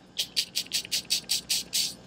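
Computer mouse scroll wheel turned notch by notch: a row of about nine short, even clicks at roughly five per second.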